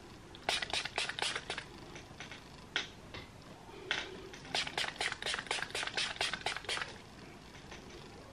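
Pump spray bottle of hair identifier spray spritzing a fine mist onto a face in quick bursts: a few spritzes just after the start, single ones near three and four seconds, then a fast run of about ten in the second half.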